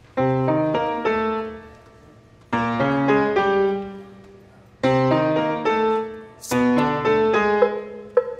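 Grand piano playing a slow introduction of chords. Each pair of chords is struck, rings and fades, and a new pair comes in about every two and a half seconds.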